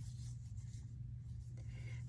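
Quiet room with a steady low hum and faint rubbing or rustling.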